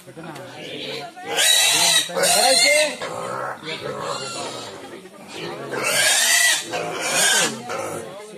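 Piglets squealing shrilly in four loud bursts, two close together about a second and a half in and two more around six to seven seconds in.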